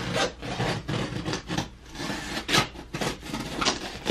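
Packing tape on a cardboard shipping box being slit with scissors and pulled off the cardboard, in a series of short, irregular scraping and ripping strokes.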